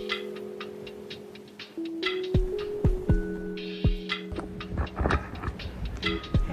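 Background music with a beat: held synth chords that change a few times, over a deep kick drum and short high ticks.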